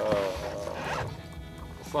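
A zipper being pulled in one steady rasp lasting about a second, while fishing tackle is handled.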